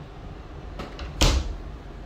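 A closet door being pushed shut: a couple of light knocks, then one loud thump a little over a second in.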